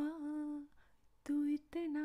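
A woman humming the melody unaccompanied, lips closed: a held low note that fades out about two-thirds of a second in, then after a short pause two more held notes.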